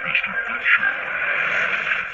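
Soundtrack of an animated DVD trailer played back through a small speaker, thin and tinny.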